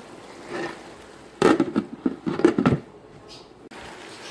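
A spatula clattering and scraping in an electric frying pan of frying giblets, a burst of sharp knocks lasting just over a second from about a second and a half in.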